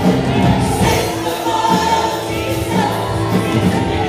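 Live gospel worship music: several women singing together over a band with electric bass, keyboard and drums.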